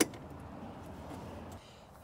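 A golf cart's key switch clicks once as the key is turned off. Only faint low background noise follows, dropping a little about a second and a half in.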